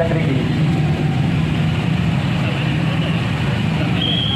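Motorcycle engines idling, a steady low drone, under the chatter of a street crowd.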